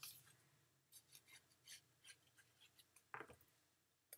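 Near silence with faint, scattered rustles and light taps of paper: patterned cardstock pieces being picked up and laid onto a card.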